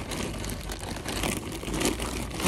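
Shopping bag rustling as it is pulled out of a shopping cart, over a steady low rumble of outdoor background noise.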